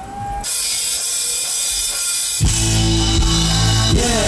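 Live rock band starting a song: a high, even wash from the cymbals begins about half a second in, then the drum kit, bass and electric guitar come in together about two and a half seconds in.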